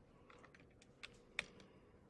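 Near silence broken by a few faint computer keyboard key clicks; the loudest comes about one and a half seconds in.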